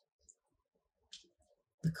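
Mostly quiet, with a couple of faint soft clicks; a spoken word begins near the end.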